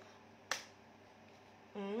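A single sharp click about half a second in, then a short hummed 'mm-mm' from a woman near the end.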